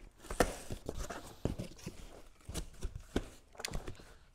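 A cardboard box being opened: a knife slitting the packing tape and the flaps pulled back, heard as a run of irregular scrapes, clicks and knocks of cardboard.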